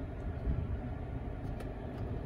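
Steady low hum of a 2018 Mazda3's engine idling and its ventilation fan running, heard inside the cabin, with a few faint clicks.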